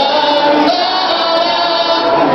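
A large group of voices singing together in long held notes.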